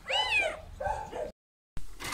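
A hungry domestic cat meowing before feeding: one loud meow that rises and falls in pitch, then a shorter, fainter meow, after which the sound cuts off suddenly.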